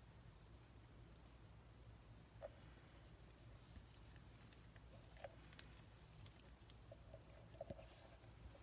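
Near silence: faint room hum with a few soft, brief ticks while thick pine tar is poured.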